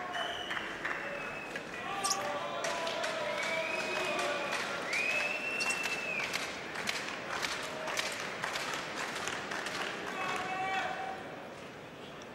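Arena crowd cheering and applauding a point: dense clapping with shouting voices and a couple of long, high whistles a few seconds in, dying down near the end.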